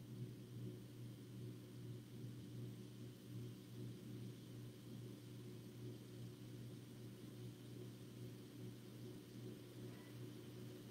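Near silence: room tone, a faint steady low hum under a light hiss.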